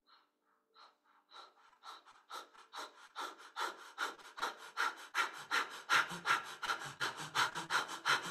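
A man's rapid, rhythmic breathing in short forceful breaths. It begins faint and slow about a second in, then quickens and grows louder until it runs at about four breaths a second.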